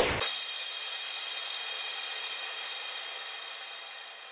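The closing moment of a club dance track: a final hit just after the start cuts off the beat, leaving a cymbal ringing out alone and slowly fading away.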